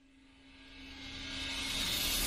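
A cinematic riser: a noisy, jet-like whoosh that swells steadily louder from near silence and grows brighter as it builds, over a faint steady hum.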